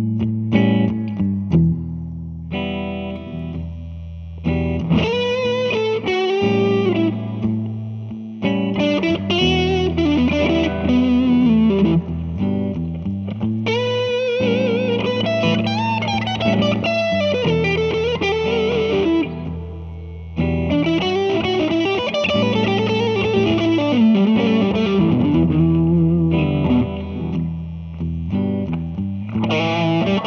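Gibson Custom Shop 1959 Les Paul reissue electric guitar (Brazilian rosewood fingerboard) played lead: melodic phrases with string bends and vibrato over sustained low notes, with short breaks between phrases.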